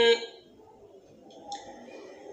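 A reciter's voice holding one long, steady chanted vowel in Quranic Arabic that cuts off just after the start, followed by a quiet pause with only faint room sound.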